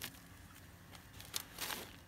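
Bare hands scrunching and turning damp, sandy potting mix in a wheelbarrow: a few faint short gritty scrapes, the longest a little past halfway.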